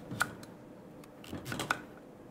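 Chef's knife cutting through raw sweet potato and knocking on a wooden chopping board: one sharp chop just after the start, then three or four quick chops near the end.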